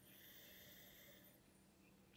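Near silence with one faint sniff lasting about a second: a man breathing in through his nose over a wine glass as he noses the wine.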